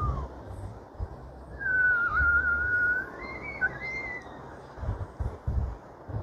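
A person whistling: a short note, then a long wavering note held for over a second, then a few shorter, higher notes. Underneath is a low, gusty rumble of wind buffeting the microphone.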